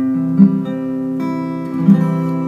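Acoustic guitar playing a C major chord voiced with open strings, its notes plucked one after another and left ringing. A louder low note sounds about half a second in and again near the end.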